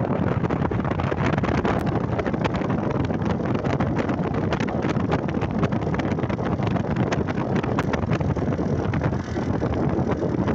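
Steady rush of wind buffeting the microphone of a camera carried on a moving two-wheeler, with vehicle and road noise underneath.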